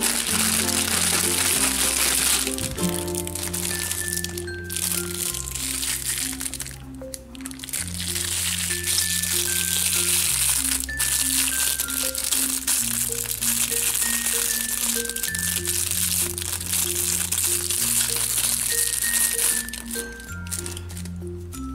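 Clear plastic bag crinkling as it is handled and peeled off a diecast model airplane, under background music with a steady bass line and a simple melody.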